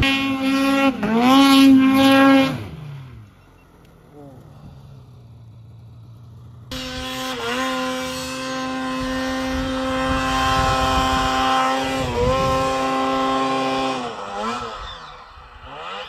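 Arctic Cat Catalyst snowmobile's two-stroke engine held at high revs for about two and a half seconds, then fading to a lull. It cuts back in suddenly at high revs for about seven seconds, with two brief dips in pitch, before easing off near the end.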